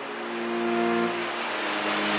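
Synthesized intro sound: held electronic chords under a whoosh that swells louder and brighter, building toward a logo reveal.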